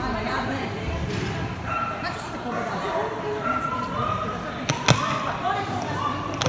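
People's voices in a large, echoing indoor hall, with one sharp knock a little before the end.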